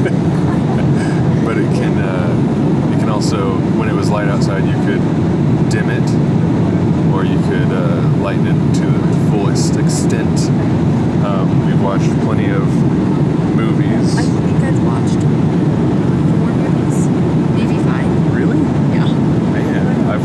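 Steady cabin noise of a Boeing 787 airliner in cruise, the engines and airflow making an even low roar, with faint voices and a few light ticks over it.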